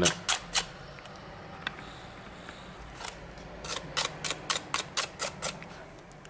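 A toothbrush scrubbing a phone's bare midframe to sweep out leftover glass shards: a series of sharp, scratchy ticks, a few scattered ones at first, then a quicker run in the second half.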